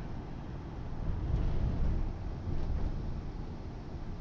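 Low, steady rumble of a car's interior while riding: road and engine noise heard from inside the cabin.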